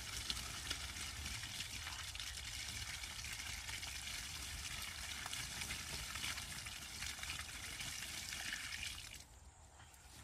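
Water poured from a plastic bucket onto a tree stump, splashing steadily for about nine seconds and then stopping.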